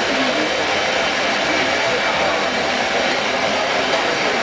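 Steady loud background noise with indistinct voices murmuring underneath, no distinct events.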